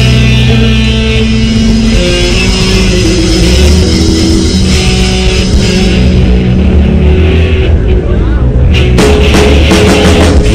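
Hardcore punk band playing live: loud distorted electric guitar chords over bass. The drums thin out for a few seconds, then come back in with cymbals and the full band about nine seconds in.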